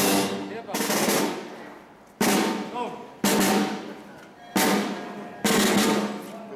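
A marching band's drum section playing a slow marching beat on snare and bass drums between pieces: about five strokes a little over a second apart, each ringing out and fading before the next.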